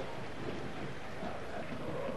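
Steady, even stadium background noise, a low hiss with no distinct shouts, chants or whistles.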